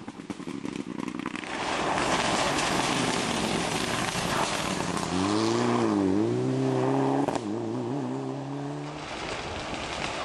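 Rally car engine being driven hard, with sharp crackling pops for the first second or so, then heavy running under acceleration. About five seconds in, a clear engine note sounds; it dips and climbs back, wavers as the revs change, and falls away near the end.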